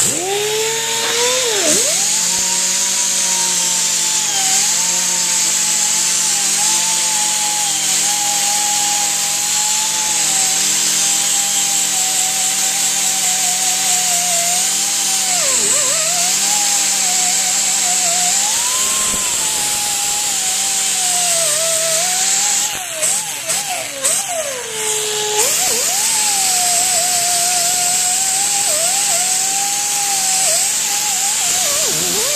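A power tool spinning a wire wheel against a rusty steel truck frame: a steady high motor whine over a hiss of scouring. The pitch sags briefly a few times as the wheel is pressed hard into the metal. About three-quarters of the way through, the sound falters for a couple of seconds, then runs steady again.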